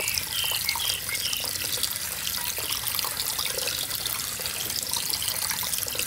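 Water from a garden hose's brass fitting running steadily into the plastic top reservoir of a GreenStalk vertical planter as it fills, a steady hiss and splash.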